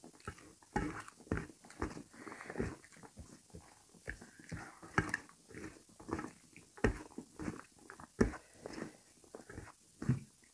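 Close-up eating sounds of rice and potato curry eaten by hand: irregular wet chewing and mouth smacking, several sounds a second, with squelching as fingers mix rice and curry on a steel plate.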